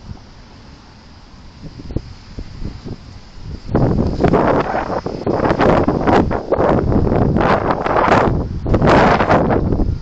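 Loud rustling and buffeting noise on a small camera's microphone, coming in gusts from about four seconds in and stopping just before the end.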